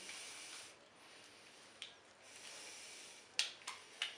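Faint handling noise from gloved hands working with a wire and a wooden grip panel: soft rustling hiss, with a light click about two seconds in and a couple of sharper clicks near the end.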